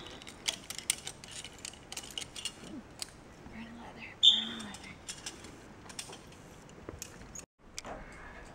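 Zipline carabiners and trolley pulley being clipped onto a steel cable: many small metal clicks and clinks with jangling clips, and a brief high-pitched tone about four seconds in.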